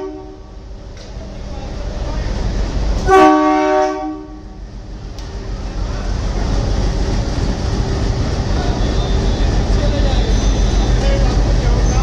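Diesel locomotive's air horn sounding one chord-like blast of about a second, about three seconds in. Afterwards the locomotive's engine and wheels rumble, growing louder as it comes up and runs past across the steel truss bridge.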